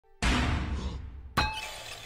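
A loud crash about a split second in, deep and rumbling with clattering debris, fading; then a second sharp metallic crash with ringing about a second later.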